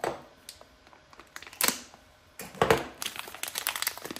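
Plastic bag and packing material crinkling and rustling as a wrapped metal part is handled and unpacked from a box, with a few louder crinkles among quieter rustling.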